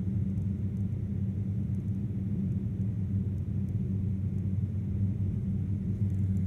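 Steady low rumble of a small electric aeroplane in flight, its propeller and the rushing air heard without change.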